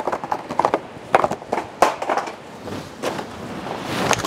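Clear plastic blister pack being handled, giving a run of irregular crackles and clicks that thin out after about two seconds.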